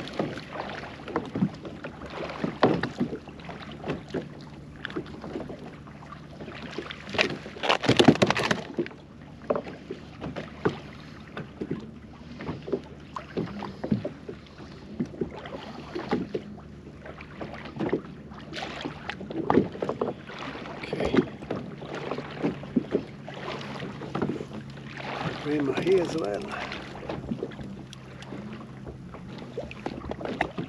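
Water slapping and knocking against a Perception Pescador Pilot 12 fishing kayak, mixed with irregular handling knocks as the angler works on his fishing tackle. The knocks are loudest in a cluster about eight seconds in.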